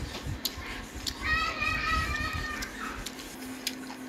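A child's high-pitched voice holding one note for about a second and a half, with a few light clicks from the table.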